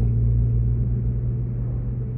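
Steady low drone of a car's engine and road noise heard from inside the cabin while driving.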